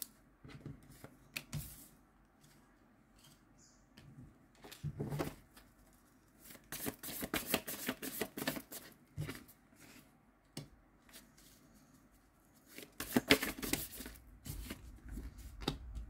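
A deck of tarot cards being shuffled by hand, in three bursts of rapid flicking and rustling: about five seconds in, from about six and a half to nine seconds, and again around thirteen to fourteen seconds. Between the bursts there are scattered light taps and slides of cards laid on the wooden table.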